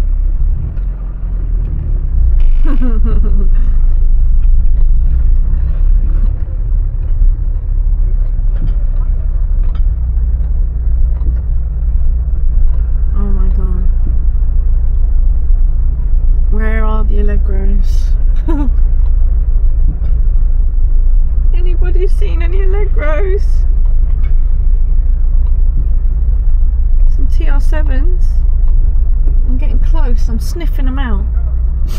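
Austin Allegro 1500's four-cylinder engine running at low revs as the car crawls along, heard from inside the car as a steady low drone.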